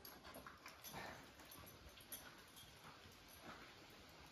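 Near silence, with a few faint, soft sounds.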